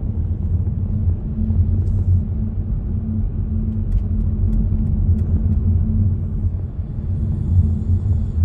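Steady low rumble of a car driving at motorway speed, heard from inside the cabin: road and engine noise with a constant low hum.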